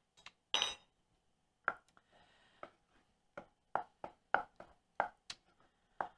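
A small spoon set down with a ringing clink against a glass measuring cup about half a second in, then a series of light knocks, about two a second, as a wooden spoon stirs thick mashed rutabaga in a pot.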